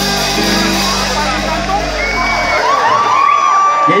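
A live band with guitars, horns and drums holds its last chord, which stops about halfway through, and then the crowd cheers and whoops.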